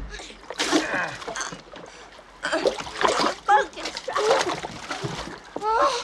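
River water splashing in irregular bursts as someone who has fallen in from a punt thrashes about, with short voiced cries mixed in.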